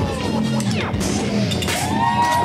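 DJ's krump battle track playing loud: a heavy beat under low bass notes, with swooping, gliding pitched sounds over it.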